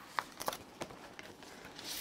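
A few faint, short taps and clicks of card stock being handled and set down on a cutting mat.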